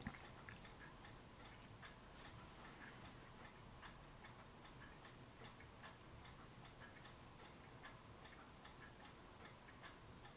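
Near silence: faint room tone with scattered light ticks.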